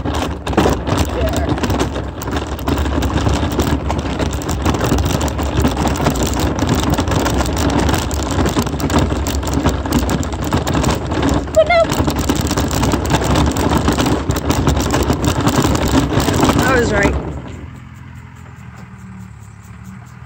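Wheels rolling over a rough dirt track: a continuous rumble and rattle with many small jolts, which stops suddenly about 17 seconds in.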